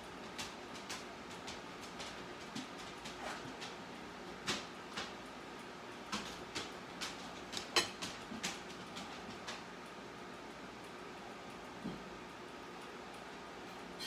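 A metal spoon clicking and scraping against a ceramic plate in irregular light taps while cheese filling is scooped up and pushed into halved jalapeños. The taps thin out after about nine seconds.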